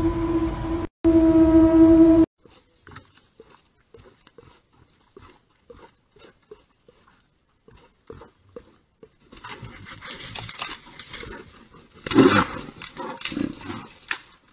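A loud steady tone with overtones, like a siren, cuts off about two seconds in. Faint scattered ticks follow, then rustling that builds to a louder scraping burst near the end as a bear rears up and rubs against a wooden post.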